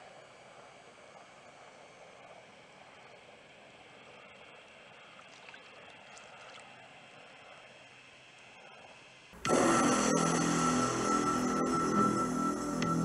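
Faint steady outdoor hiss for about nine seconds, then loud background music cuts in suddenly.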